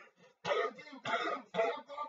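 A man's voice making several short vocal bursts without clear words.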